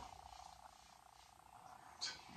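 Near silence: faint room tone with a light steady hiss.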